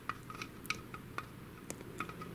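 Faint, scattered light clicks and taps of a plastic Epson TX650 printer carriage being handled while grease is dabbed into its pockets with a swab stick, about five irregular clicks over a low steady hum.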